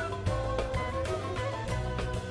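Live band playing an instrumental passage with a steady beat: a bamboo flute and a bowed string instrument carry held melody notes over bass guitar and drum kit.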